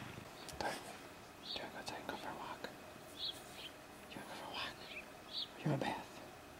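A person whispering softly in short breathy bursts, with a brief low voiced sound near the end.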